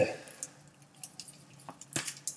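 A small parcel box handled in the hands: a few faint, light clicks and taps, the sharpest near the end.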